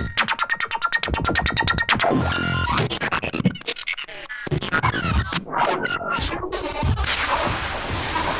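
Electronic drum loop run through Sugar-Bytes Turnado's real-time effects on an iPad and mangled live: a rapid stuttering repeat in the first two seconds, then chopped passages that cut out suddenly twice.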